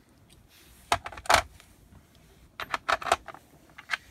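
Steel hand tools clinking and knocking together as they are handled: a pair of metal clicks about a second in, the loudest just after, then a quick cluster of clicks around three seconds and one more near the end.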